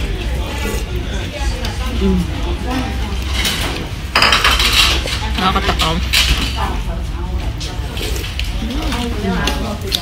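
A ceramic soup spoon clinks against a porcelain bowl of noodle soup amid the clatter of dishes and cutlery and background chatter in a restaurant. A brief rush of noise comes about four seconds in.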